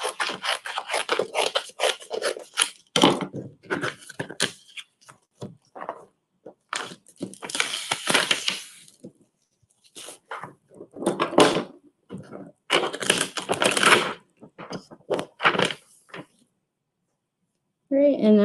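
Scissors snipping through a sheet of heat transfer vinyl on its plastic carrier, with crackling and rustling of the sheet as it is handled. Longer tearing rushes come about seven seconds in and again around thirteen seconds, among scattered clicks.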